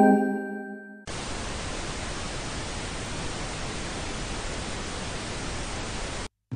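A short ringing tone with several overtones that fades over about a second, then a steady hiss of television static, a sound effect of a detuned TV screen.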